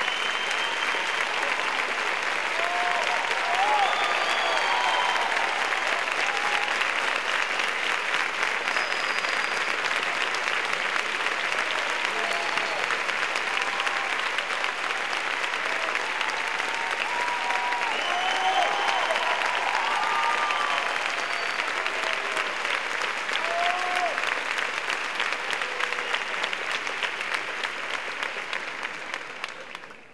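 Theatre audience applauding steadily, with scattered voices calling out over the clapping; the applause fades away near the end.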